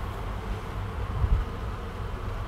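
Steady low hum with a faint hiss behind it, the background noise of the room, swelling briefly about a second in.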